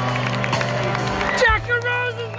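Live rock band playing an instrumental passage, heard from the audience with sustained low bass notes, with a knock of camera handling about one and a half seconds in and gliding high notes after it.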